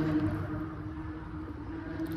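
Steady low vehicle rumble with a constant drone.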